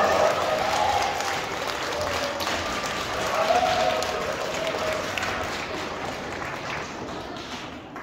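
Audience applauding, with some voices over the clapping; the applause dies away gradually over the last few seconds.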